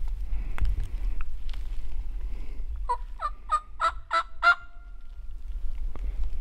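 A bird calling: a run of about six short notes, each a little higher, about three a second, ending in one longer held note.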